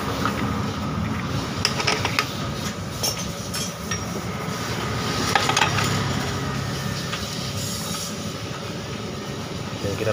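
Short metallic clicks and knocks from parts being fitted into a Honda Beat FI scooter's open CVT case, as the driven pulley and clutch assembly is put onto its shaft. A steady low rumble runs underneath.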